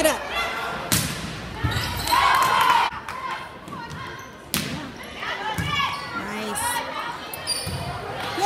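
A volleyball being struck during rallies in a large gym: a few sharp, separate smacks of the ball, mixed with players' and spectators' shouts.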